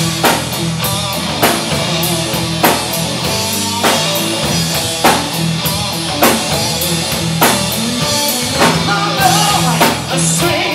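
Live rock band playing at full volume: drum kit, bass guitar and electric guitar, with a heavy drum accent about every 1.2 seconds over a steady bass line.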